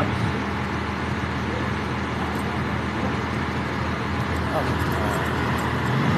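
Tour trolley's engine running steadily under way, with tyre and road noise and surrounding city traffic, heard from an open-sided seat.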